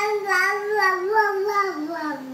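A sleepy baby fighting sleep, vocalizing in a long sing-song drone that wavers up and down and slides lower in pitch near the end.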